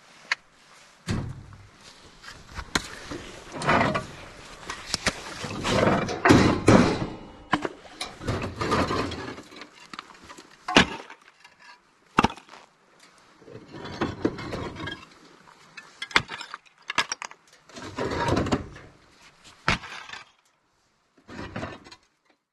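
Roof tiles being handled in and around a plastic trailer box: irregular scraping and rattling, with sharp single clacks and knocks in between. The loudest stretch of clattering comes about six to seven seconds in.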